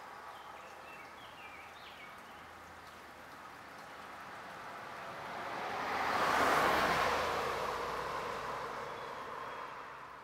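A vehicle passing along the road, its noise swelling to a peak about six to seven seconds in and then fading away, over an outdoor background with a few bird chirps near the start.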